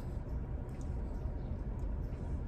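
Steady low rumble of background noise inside a car cabin, with a few faint light ticks.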